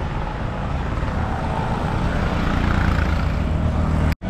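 Steady engine rumble and wind and road noise heard from on board a moving road vehicle.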